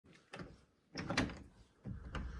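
The handle and lock of a uPVC glass door clicking and knocking as a hand works them to open the door: a small click about a third of a second in and a louder cluster of knocks around a second in.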